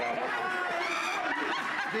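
People laughing and chuckling, mixed with voices.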